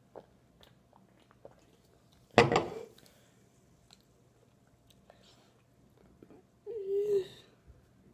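An aluminium soda can set down on a wooden table with a single sharp knock about two and a half seconds in, after a few faint mouth clicks from drinking. Near the end a short, wobbling vocal sound from the boy.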